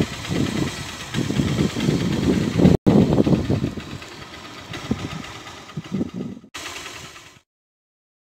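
Uneven low rumble of road traffic passing on a highway. The sound cuts out briefly twice and stops dead near the end.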